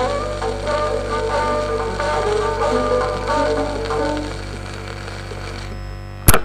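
Hindustani classical melody on violin with piano accompaniment, played from a 1940s 78 rpm shellac disc, over a steady low hum and surface noise. The music dies away about four and a half seconds in, leaving only the record's hum and hiss.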